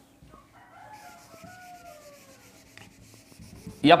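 Faint rubbing of a duster wiping marker off a whiteboard, with a distant rooster crowing once, a long call that slowly falls in pitch.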